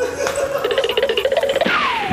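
Short comic sound-effect cue: a wavering tone over fast, even ticking, ending near the end in a falling, whistle-like glide.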